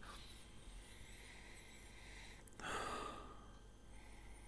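A man sniffing whisky at the rim of a tasting glass: one faint inhale through the nose about two and a half seconds in.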